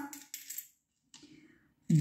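Indian rupee coins clinking faintly as a hand rummages in a small clay bowl of coins and picks out a ten-rupee coin. There are a couple of brief clinks in the first half-second and one more about a second in.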